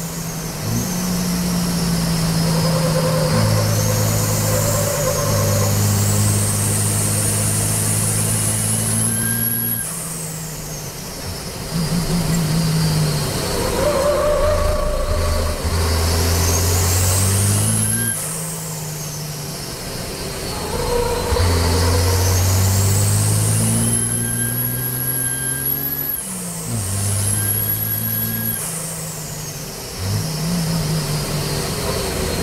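Turbodiesel Copa Truck race truck under full throttle, heard from inside the cab. The engine note steps through gear changes and a high whine climbs with each acceleration. Three times the note drops away as the driver lifts and brakes for a corner, then it picks up again.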